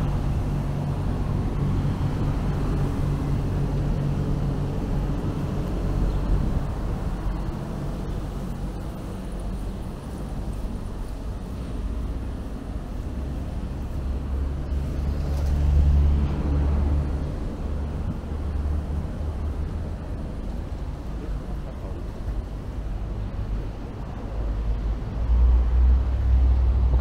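Street ambience: a steady low rumble of road traffic and vehicle engines, swelling for a few seconds around the middle.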